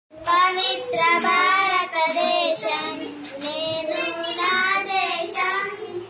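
A young girl singing solo, with long held notes that waver in pitch and short breaks between phrases.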